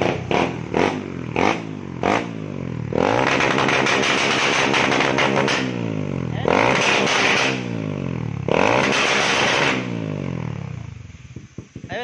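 Suzuki Raider R150 Fi single-cylinder engine running through an open exhaust with its silencer removed, tuned for rapid backfire. It gives a run of short sharp throttle blips in the first couple of seconds, then three long revs, each climbing and falling back with popping from the pipe. It drops to idle near the end, very loud with the silencer out.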